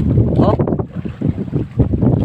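Strong northeast monsoon wind buffeting the microphone: a loud, uneven low rumble.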